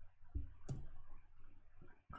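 A few faint clicks and soft knocks of desk handling, the clearest two about a third of a second and two thirds of a second in.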